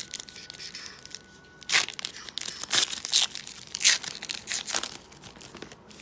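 A trading card pack's wrapper being torn open and crinkled by hand, in several short sharp rips and rustles.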